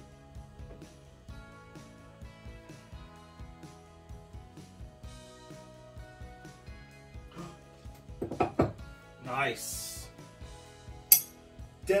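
Background music playing, with light clatter of ceramic plates being handled. A single sharp clink of cutlery or crockery about a second before the end.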